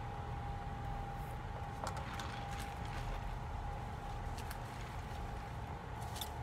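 A steady low background hum with a thin, constant tone in it, and a few faint soft clicks.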